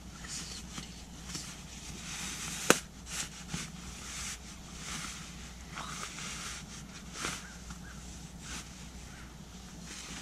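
Rustling and scraping of synthetic fabric as camo hunting pants and boots are wriggled off on a sleeping bag, with one sharp snap a little under three seconds in.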